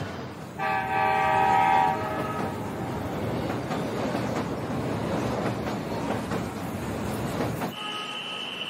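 Passenger train sounding one long horn blast about half a second in, then running along the track with a steady rumble that cuts off shortly before the end.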